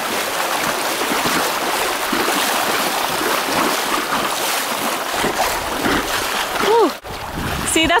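Steady rush and splash of whitewater through small river rapids, heard close up from an inflatable boat riding through them. The rush breaks off abruptly about seven seconds in.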